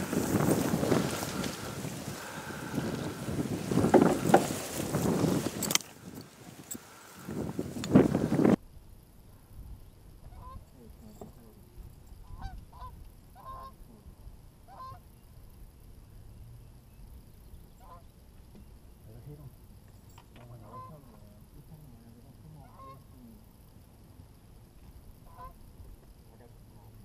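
Loud rustling noise for the first eight seconds or so, cut off suddenly. Then faint Canada geese honking: scattered single honks every second or so.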